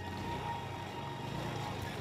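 Distant motor scooter engine running as the scooter approaches over cobbles, heard faintly under a steady outdoor hiss.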